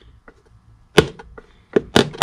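A small hammer strikes a metal punch inside a shoe's heel three times in the second half, driving new heel nails into a leather heel base. The blows are short taps, because there is no room for a full swing, and the nails are left still sticking up.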